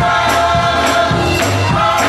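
Gospel choir singing in full voice with hand clapping and tambourine on a steady beat, about two beats a second, over a bass accompaniment.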